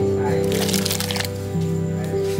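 Background music with steady held tones. About half a second in, a short splash as sliced carrots are tipped from a plastic basket into a pot of boiling water.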